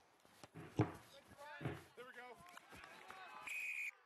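Faint sound of a rugby ball kicked off the tee for a penalty kick at goal: one sharp thump about a second in, followed by faint distant voices and a short high whistle near the end.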